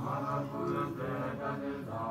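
Tibetan Buddhist mantra chanting by low male voices, held notes that shift in pitch every half second or so.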